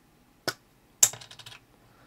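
A small lens cap pulled off the end of a handheld digital microscope, with a light click about half a second in. About a second in the cap is set down on the desk with a sharper knock and a brief rattle.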